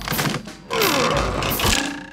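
Cartoon sound effect of a wooden floorboard being prised up, a noisy creak with a falling tone, over background music.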